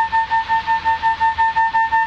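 3M Dynatel 573A cable locator receiver sounding its audio-mode tone: one steady pitch pulsing evenly, about four to five beeps a second. The receiver is picking up the audio signal sent down an underground power cable, which means it is over the traced cable.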